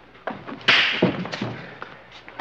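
Scuffle between two men: a few thumps, with one loud sharp hit about two-thirds of a second in and a couple of smaller knocks after it.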